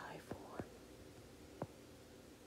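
A stylus tapping on a tablet's glass screen during handwriting: a few faint clicks, the clearest about one and a half seconds in, over low hiss.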